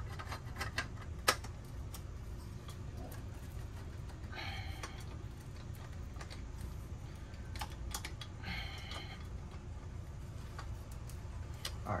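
Steel exhaust mid-pipe being worked onto the motorcycle's header pipe: scattered light metallic clicks and knocks, a sharper knock about a second in, and two short metal-on-metal scrapes as the pipe slides into the joint, around four and eight and a half seconds in. A low steady hum runs underneath.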